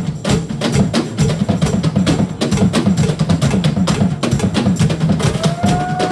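Live rock band with two drum kits playing together, dense fast drum hits over a bass line. A single held note comes in about five seconds in.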